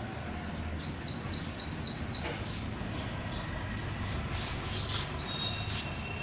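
A small bird chirping in quick runs of short, high notes, one run about a second in and another near the end, over a steady low background hum.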